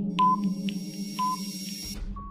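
Quiz countdown timer music: a steady low electronic drone under a ticking pattern, short beeps and clicks alternating about twice a second and fading as it runs down. A low thud comes near the end.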